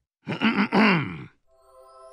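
A man's voice clearing his throat, a rough, loud "ahem" lasting about a second. Near the end a soft, sustained musical chord begins to swell in.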